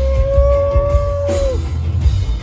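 Live rock band playing through a concert PA, with heavy bass and drums. Over it a single high note is held for about a second and a half, then bends downward and drops out.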